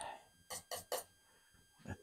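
Palette knife dabbing oil paint onto the canvas: three short scratchy strokes about a quarter of a second apart.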